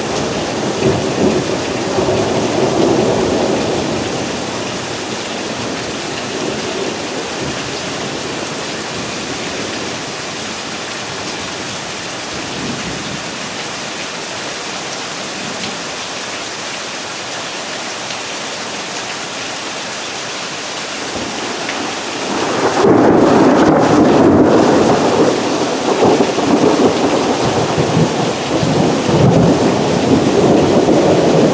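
Steady rain falling on grass and trees during a spring thunderstorm, with rolling thunder. A low rumble swells over the rain near the start; a much louder one builds about two-thirds of the way through and holds for several seconds.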